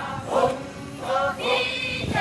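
Background music of voices singing together, choir-like, in short phrases.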